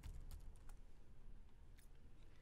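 A few faint, separate computer keyboard key clicks over quiet room tone, the last one near the end.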